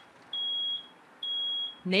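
Smoke alarm beeping: a high, steady tone in half-second beeps, two of them about a second apart.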